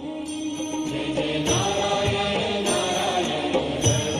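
Devotional music with chanting voices, with a high accent repeating about once a second.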